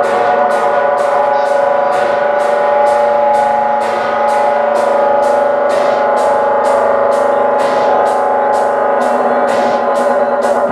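Techno DJ set playing loud over a club sound system: a held synth chord over a steady high percussion tick about twice a second, with little deep bass.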